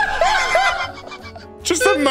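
Men laughing hard, a quick run of about four 'ha' pulses a second that trails off after the first second, over quiet background music.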